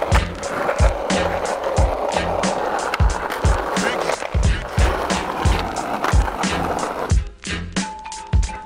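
Skateboard wheels rolling on street asphalt, a steady rolling rumble that stops about seven seconds in. Music with a steady beat plays throughout.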